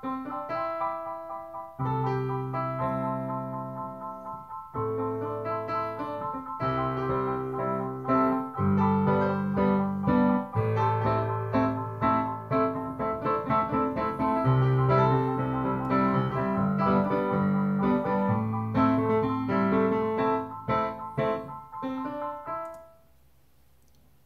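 Kawai KDP-110 digital piano played with both hands: low held chords under a higher melody line. The playing stops about a second before the end.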